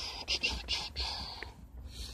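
Close rustling of fabric in a few quick bursts over about a second and a half, as a cover is pulled around the body.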